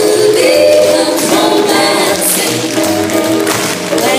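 Music for a stage dance number: a singing voice over a steady beat.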